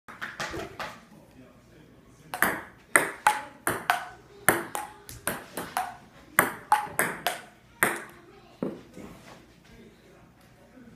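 Table tennis ball clicking off paddles and the table in a fast back-and-forth rally, about three hits a second. A few lone bounces come first, and the rally stops near the end.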